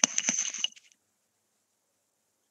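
A short burst of crackling clicks and rustle, under a second long, heard through a video call's audio. It cuts off suddenly to silence.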